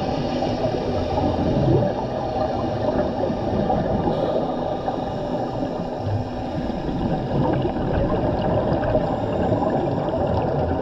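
Underwater ambience picked up by a submerged camera: a steady, muffled rush of water noise, heaviest in the low end.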